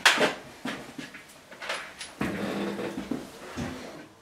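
Knocks and clicks of metal parts and tools being handled on a workbench, the loudest right at the start, followed about two seconds in by a drawn-out low hum lasting a second or so.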